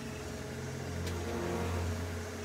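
Steady low hum with a few held tones, swelling slightly in the second half, and a faint click about a second in.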